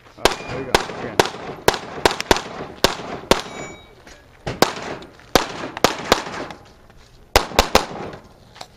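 Pistol shots fired in quick strings during a practical shooting stage, about fifteen in all, mostly in pairs or threes half a second or less apart with short pauses between groups; each shot has a short echo. A steel target rings briefly after a couple of the hits.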